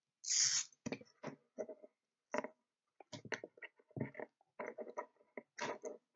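Hook-and-loop fastener strap being fed through the slots of a battery holder plate by hand: a short hiss of the strap sliding just after the start, then irregular small scratches, taps and clicks as the strap and plate are handled.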